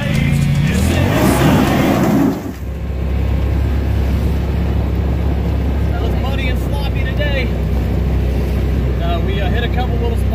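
Heavy metal music that stops abruptly about two seconds in, followed by a side-by-side UTV's engine running steadily with a low drone, heard from inside the cab while riding, with people talking over it.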